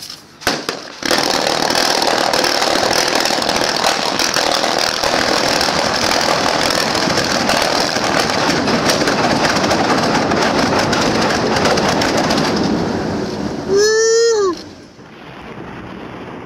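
A small underwater demolition charge going off about a second in after a few sharp clicks, followed by a long, loud rushing, crackling noise as the spray of water it throws up comes down, tailing off after about twelve seconds.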